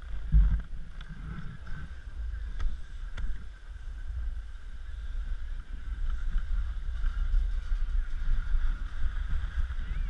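Wind buffeting the microphone of a body-worn action camera during a downhill ski run, with skis hissing and scraping over packed, groomed snow; it grows louder about halfway through as speed builds.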